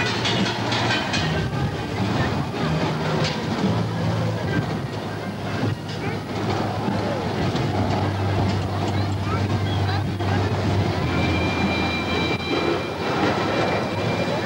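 Roller coaster car running along its steel track: a continuous rumble and clatter with a steady low hum, and a high steady tone joining near the end.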